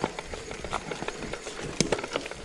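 Mountain bike descending a rocky forest trail: tyres rolling over stones and dirt, with irregular knocks and rattles from the bike.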